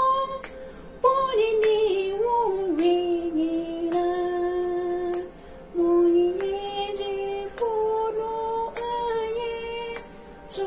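A woman singing a hymn solo, holding long sustained notes with brief breaths between phrases.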